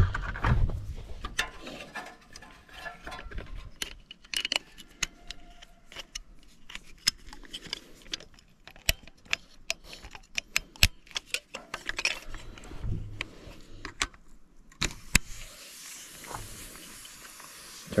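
Metal clicks and clinks of air-hose fittings and quick couplers being handled and hooked to a cylinder leakage tester. About fifteen seconds in, a steady hiss of compressed air begins as the air supply is connected to the tester.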